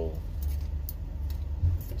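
Low steady rumble of a parked semi-truck's engine idling, heard inside the cab, with a short low thump about one and a half seconds in and a few faint clicks.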